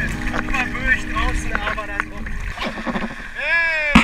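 A person's voice calling out in drawn-out sounds without clear words, over an even noise of wind and water. The last call, near the end, is the longest.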